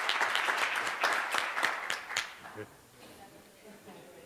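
Audience applause with many individual claps, thinning out and dying away a little over two seconds in, leaving faint murmur in the hall.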